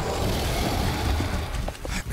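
Cartoon sound effects: a loud, deep, continuous rumble under a steady noisy roar, with a few short knocks near the end.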